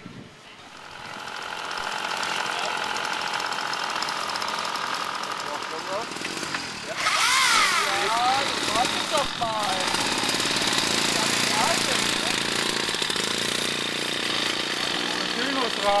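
Small two-stroke auxiliary engine of a motor-assisted bicycle running under way, building up about a second in and then holding steady. About seven seconds in it gets louder, and its pitch swings up and down for a couple of seconds.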